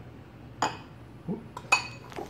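A spoon clinking twice against a mixing bowl of mirror glaze, about a second apart; the second clink is the louder and rings briefly.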